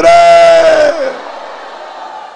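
A man's amplified voice holding one long, loud vowel for about a second, the drawn-out end of a shouted phrase, falling slightly as it stops. The hall's reverberation follows.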